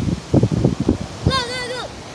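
Wind buffeting and handling noise on a phone microphone in uneven low rumbles, then a child's voice calls out briefly, holding one pitch, in the second half.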